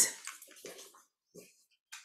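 A woman's soft speaking voice trails off, then a near-silent pause holds only a few faint, brief sounds, with a small click just before she speaks again.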